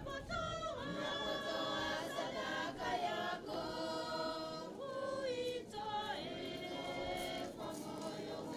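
A church choir and congregation singing a hymn together in one continuous, unbroken stretch; it is the offertory hymn sung while the offering is collected.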